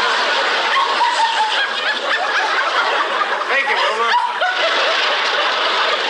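Studio audience laughing steadily at a sitcom punchline, many voices together.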